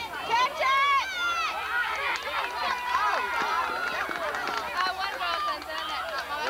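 Several high-pitched children's voices talking and calling out over one another, with no single clear speaker.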